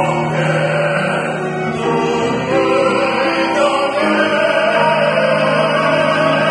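Three male voices, tenors and baritones, singing a slow Korean art song (gagok) in harmony with piano accompaniment. They sing long, held notes that move from pitch to pitch.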